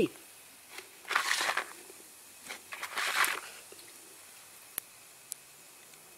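Handling noise of a rubber-gloved hand turning a rough crystal rock specimen: two short scraping rustles, about a second and three seconds in, then two faint clicks near the end.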